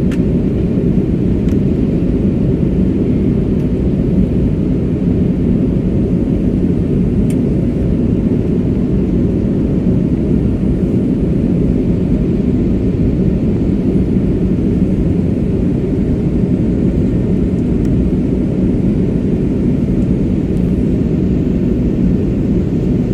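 Aircraft cabin noise in flight: a loud, steady low rumble of engines and airflow heard from inside the passenger cabin, with a faint steady hum above it.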